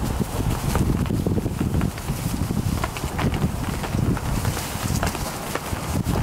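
Vizsla puppies scampering and tumbling in loose wood-shaving bedding: a steady scuffle and rustle of small paws kicking through the shavings, with scattered sharper scratches and pats.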